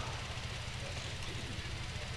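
Steady low hum with faint, even background noise.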